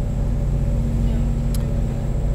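A steady low rumbling hum with a faint high-pitched whine above it.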